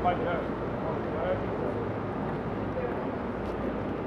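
Indistinct voices of several people talking in the background over a steady, low, even hum, in a large hangar bay.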